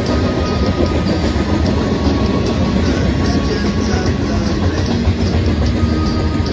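Covered hopper cars of a long freight train rolling past: a steady, loud rumble of steel wheels on rail, with a thin, steady high tone over it and faint clicks.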